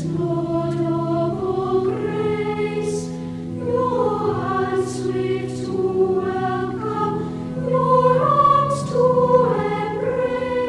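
Cathedral choir singing slow, sustained chords that move step by step, with short hissing consonants now and then.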